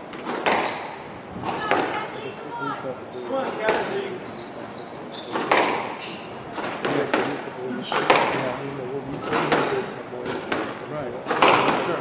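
A squash rally: sharp cracks of racquet strikes and the ball smacking the front wall and glass, coming roughly once a second, with a few short squeaks of shoes on the wooden court floor, echoing in a large hall. Low spectator voices sit underneath.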